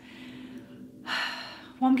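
A woman's breath between phrases: a faint breath out, then about a second in a short, audible intake of breath just before she speaks again.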